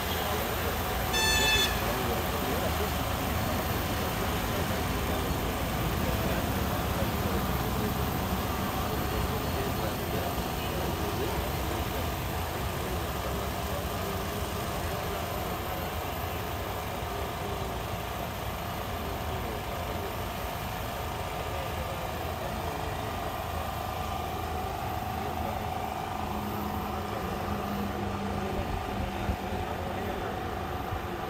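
Indistinct voices of a group talking over a steady mechanical hum. A short pitched beep sounds about a second and a half in.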